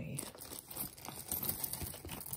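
Clear plastic bag crinkling and rustling in an irregular crackle as a hand rummages through the jewelry inside it.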